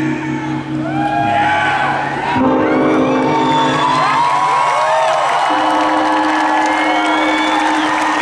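A live band's closing chords ringing out, with an audience whooping and cheering over them.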